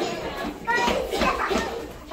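Children chattering and calling out over one another, several young voices at once.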